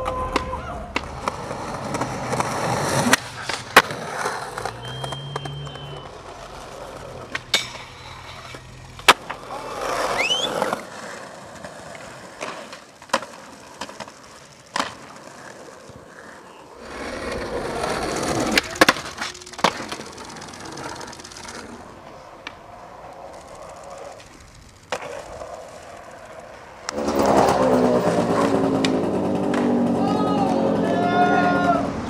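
Skateboard wheels rolling on pavement, with sharp pops and clacks from tricks and landings at irregular intervals. In the last few seconds a louder sound with several held tones comes in.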